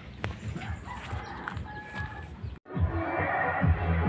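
Footsteps and light knocks for about two and a half seconds, then a sudden cut to electronic background music with a steady bass beat.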